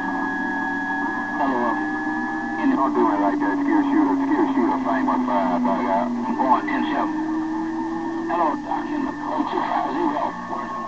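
Yaesu transceiver's speaker receiving strong skip signals on CB channel 6 (27.025 MHz): garbled, warbling voices overlap beneath steady whistle tones, one of which slides slowly down in pitch.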